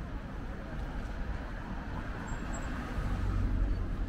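Street traffic noise: a steady low rumble of cars on nearby roads that swells a little about three seconds in.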